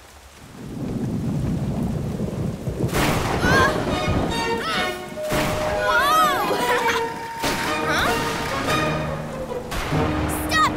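Cartoon rainstorm sound effects: a rumble of thunder builds from quiet with rain noise over it. Background music comes in about three seconds in, with gliding pitched tones.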